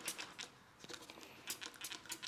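Trigger spray bottle of household cleaner squirting several short, faint sprays.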